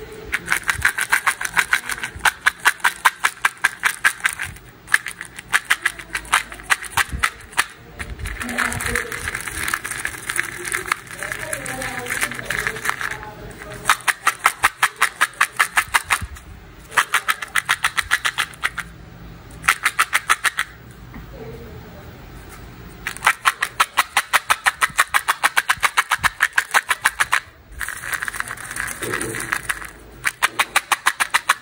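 Hard-shelled candy-coated chocolates rattling against each other and the walls of a plastic cup as it is shaken by hand. The shaking comes in quick rhythmic runs, several shakes a second, lasting a few seconds each with short breaks.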